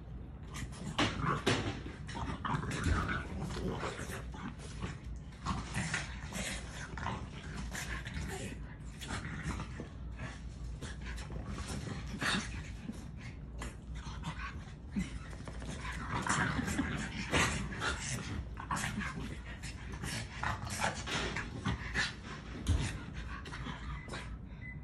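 Three French bulldogs play-fighting on a plush dog bed: a continuous, irregular run of short dog noises mixed with scuffling on the bedding.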